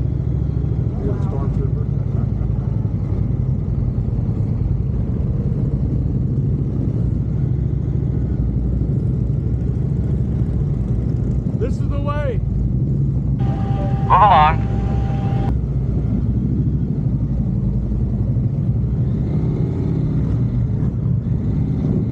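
Motorcycle engine running at low road speed, heard as a steady low rumble mixed with wind noise on a bike-mounted camera. A little past halfway there are brief wavering voice-like sounds, followed shortly by a louder short tonal sound.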